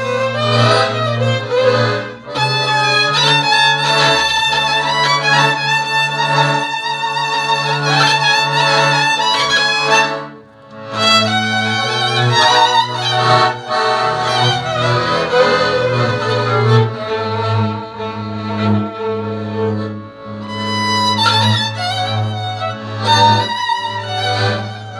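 Two fiddles playing a Romanian dance tune from the Mezőség region of Transylvania together, over a steady low string accompaniment. The music breaks off briefly about ten seconds in, then resumes.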